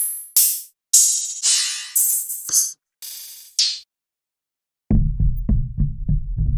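Open hi-hat samples from a trap drum kit, played one after another, each a bright hiss that dies away within about half a second. After a short gap, near the end, a percussion loop starts: quick rhythmic knocks over a low, sustained bass tone.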